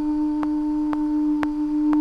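Background music: a held low synth note with a light tick about twice a second.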